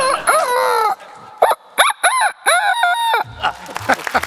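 A person mimicking a chicken into a microphone. It is a run of pitched, gliding calls: a few short ones, then a longer drawn-out call just after three seconds.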